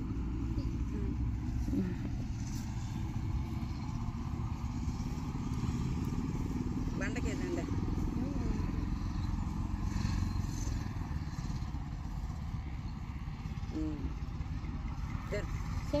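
A steady low rumble runs throughout, with brief faint voices now and then.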